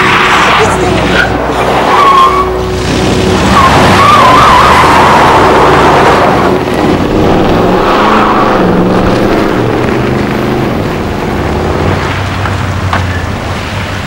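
A pickup truck's engine revving with tyres squealing as it speeds along the street, the squeals coming in short wavering bursts in the first few seconds before the sound gradually fades.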